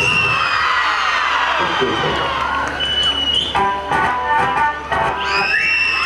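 Dance music playing over loudspeakers, with an audience cheering and whooping over it; the shouts rise loudest near the start and again about five seconds in.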